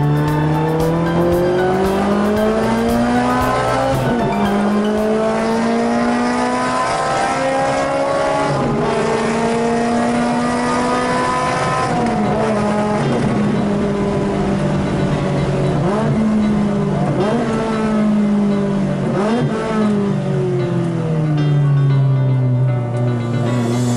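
Onboard sound of a track car's engine pulling hard through the gears, its pitch climbing and then dropping sharply at two upshifts. In the second half the pitch falls away with several quick rev blips on downshifts into corners.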